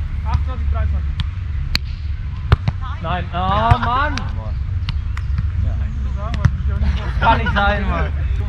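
A volleyball rally on sand: a string of sharp single smacks as the ball is hit by hands and arms, with players shouting about three seconds in and again near the end, over a steady low rumble.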